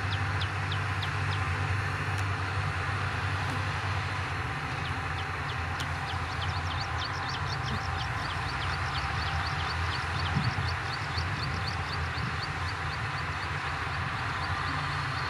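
Shantui DH17C2 bulldozer with its diesel engine running steadily, and a rhythmic run of short, high squeaks of the kind crawler tracks make while moving. There are a few squeaks near the start, then from about six seconds in a faster run of about five a second.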